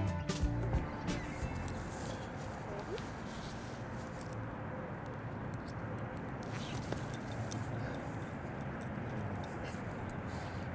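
Background music ending in the first second, then steady outdoor background noise with a few faint clicks.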